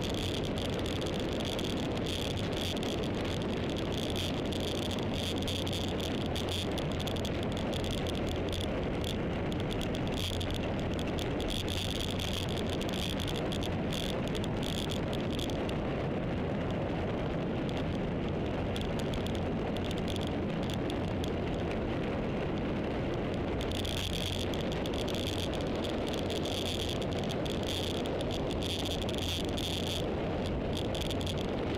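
Steady rush of wind on the microphone and road noise from a vehicle travelling along a paved road, with light rattling. A high steady buzz runs through it and drops out for several seconds past the middle.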